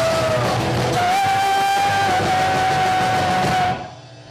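Punk rock band playing live, with distorted electric guitars and drums. A single high note is held steady for a couple of seconds. Near the end the music stops abruptly for a brief break.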